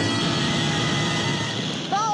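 Cartoon sound effect of a fire-breathing dragon: a loud, rough, steady roar of noise.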